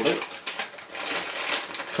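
Plastic crisp packet crinkling and rustling in a run of quick crackles as it is opened and handled.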